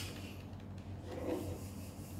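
A plastic 4x4 puzzle cube being turned by hand, its layers sliding with a soft rubbing.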